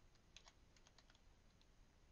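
Faint computer keyboard typing: a scatter of soft key clicks over near silence.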